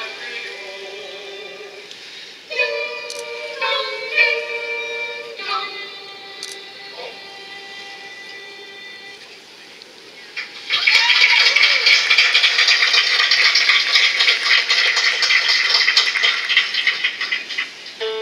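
A choir singing a Christmas carol in long held notes, carried across the water, the last chord fading out about ten seconds in. Then clapping and cheering break out suddenly and carry on, louder than the singing.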